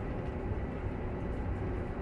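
Steady running noise inside the cabin of an Olectra electric bus on the move: low road and tyre rumble with no engine note.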